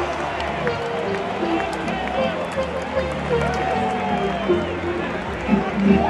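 Ballpark crowd chatter filling a stadium, with music from the sound system playing a melody of short held notes over it.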